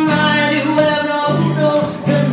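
Live acoustic song: a steel-string acoustic guitar strummed in chords that change about every second, with a woman singing over it.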